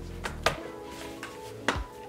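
Two sharp clicks as a tablet case's folding cover is handled, one about half a second in and one near the end, over soft background music.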